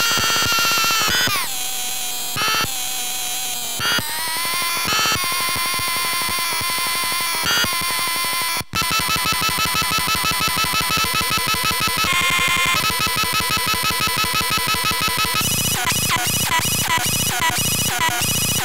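Circuit-bent VTech Little Smart Tiny Touch Phone toy making harsh, buzzy electronic tones as its knobs are turned. The pitch drops about a second in, and the sound cuts out briefly about halfway. It then settles into a fast, even pulsing of about three or four beats a second, which turns into choppier, stuttering pulses near the end.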